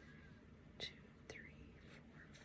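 Near silence: room tone, with a couple of faint short soft sounds, the clearest a little under a second in.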